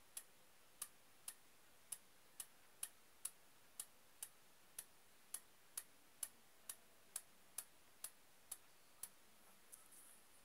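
Faint, even ticking, about two ticks a second, over a near-silent room.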